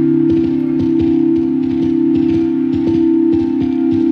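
Ambient music: a held low chord of steady tones, with a quick, irregular scatter of soft clicks over it.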